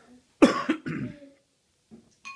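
A short bout of coughing about half a second in, loud and close to the microphone.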